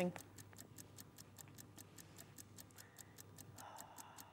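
Faint, rapid, evenly spaced ticking, about seven ticks a second, over a low steady hum: a clock-like ticking effect running under the show's on-screen countdown.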